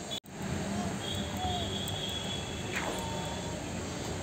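Steady outdoor background noise with faint distant traffic, after a sudden cut at the start. A faint high steady tone sounds for about a second, starting about a second in.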